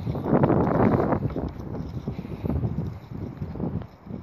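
Wind buffeting a handheld phone's microphone in irregular gusts, strongest in the first half and dying down near the end.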